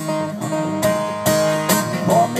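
Acoustic guitar strummed in a steady rhythm, about five strums roughly two and a half a second, with the chord ringing on between strokes.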